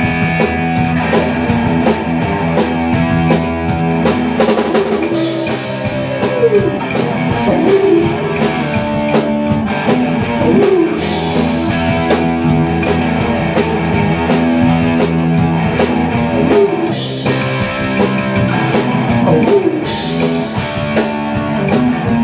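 A live rock band plays an instrumental stretch. A drum kit keeps a steady beat, with the bass drum and a constant run of cymbal strokes, under guitar and bass. Cymbal crashes wash over it several times.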